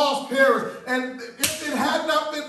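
A man's voice raised in impassioned preaching, with one sharp slap about one and a half seconds in.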